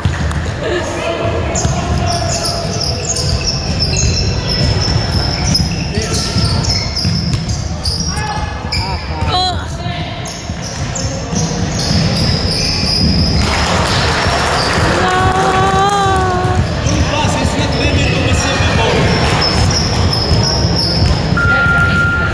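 Basketball dribbled on a hardwood gym floor amid players' running footsteps and sneaker squeaks, echoing in the hall. Spectators' voices run underneath, with a raised call about two-thirds of the way in.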